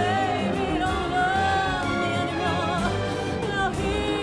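A woman singing a slow ballad with long held notes and vibrato, accompanied by a symphony orchestra and drums.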